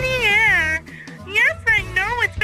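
A high, wavering voice over music, holding a long note that breaks off about a second in, then returning with short rising-and-falling notes near the end.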